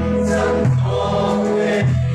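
A crowd of mourners singing a Mizo hymn together in chorus, holding long notes.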